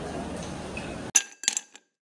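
Steady background hubbub of a busy indoor station concourse, then about a second in two bright, glassy clinks in quick succession, ringing briefly before the sound cuts to dead silence: an editing sound effect marking a scene transition.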